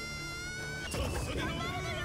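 Audio from a tokusatsu TV episode: a steady, high buzzing tone held for about a second that cuts off suddenly, then a character speaking.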